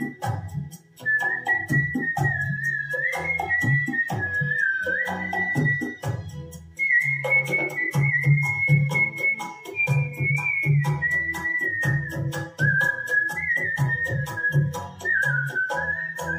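A man whistling the melody of a 1960s Hindi film song over a karaoke backing track with bass and a steady percussion beat. The whistle moves in held notes and small steps, with a short break about six seconds in before a higher phrase.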